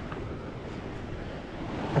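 Steady rushing outdoor background noise with no distinct sounds standing out.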